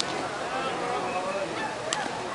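Indistinct voices of players calling out and chattering, with two sharp clicks, one at the very start and one near the end.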